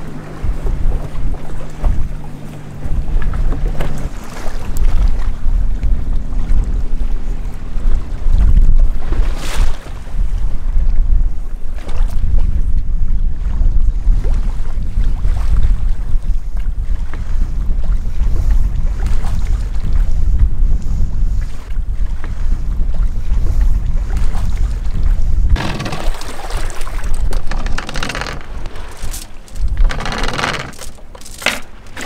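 Strong wind buffeting the microphone on open sea, with waves slapping the hull. Near the end comes a run of metallic clinks from anchor chain being hauled up over the bow.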